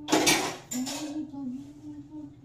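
Two brief bursts of clatter, about a tenth of a second and three-quarters of a second in, over a held melody line whose pitch wavers slowly up and down.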